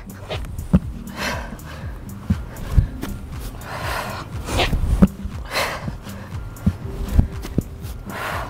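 Hard breathing with loud puffed exhales and the dull thuds of feet landing on a thin exercise mat on grass, repeated every couple of seconds, over background music.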